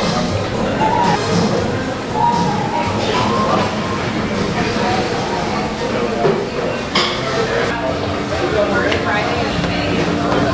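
People talking over background music, with a sharp click about seven seconds in.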